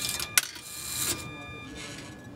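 VEX marble sorter working: a sharp click about a third of a second in, then a short mechanical whir that swells and fades, with a faint steady high whine from its motors as a gate moves to let a marble through.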